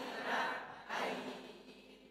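Several voices reading Arabic words aloud together in unison: one phrase, then a second that fades out near the end.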